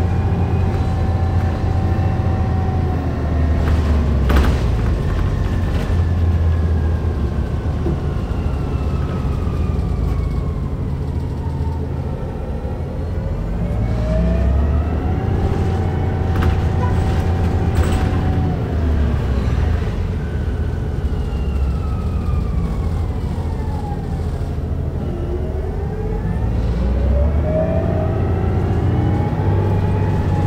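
Hybrid bus drive whine, heard from inside a 2009 Orion VII NG with BAE Systems HybriDrive: several whining tones glide down in pitch and climb again, twice, as the electric drive slows and speeds up, over the low steady drone of the Cummins ISB diesel. A few sharp knocks stand out, about four seconds in and again near the middle.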